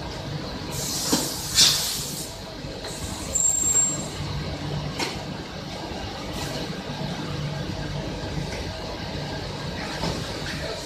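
Pneumatic high-frequency PVC welding press and workshop machinery: a steady low hum with several short hisses of compressed air, the loudest about one and a half seconds in, then a sharp click about five seconds in.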